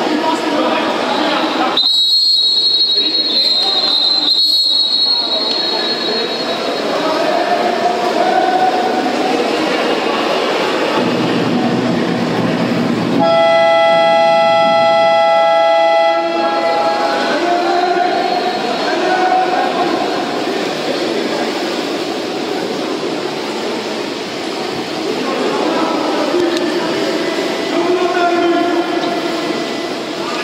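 Referee's whistle blown in two blasts about two seconds in, and about thirteen seconds in an electronic shot-clock horn sounds for about three seconds. Throughout there is the echoing noise of an indoor pool hall, with players and spectators shouting.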